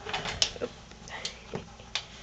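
Irregular clicks and scratches from two tamanduas' claws scrabbling on a wooden floor as they wrestle, a quick cluster in the first half second and a few single clicks later.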